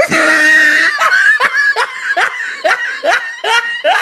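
A man laughing hard: a high, held squeal of laughter, then a run of laughing bursts about two or three a second.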